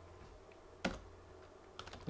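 Computer keyboard: a single keystroke about halfway through, the Enter key sending the typed command, then a quick run of key taps near the end as typing starts again. A faint low hum lies underneath.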